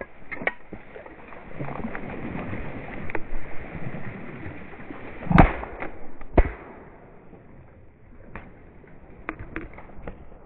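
Two shotgun shots about a second apart, the first the louder, with reeds rustling before them and a few light clicks near the end.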